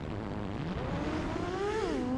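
FPV quadcopter's four brushless motors (Hyperlite 2205.5 1922KV on 6-inch props) whining as throttle is fed in through the pull-out of a split S. The pitch is low at first, rises over about a second, then drops near the end.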